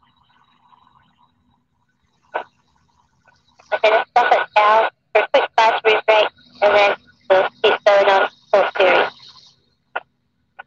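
A voice coming over the aircraft radio in the pilot's headset: a quick run of clipped, speech-like syllables lasting about six seconds, after a single click about two seconds in.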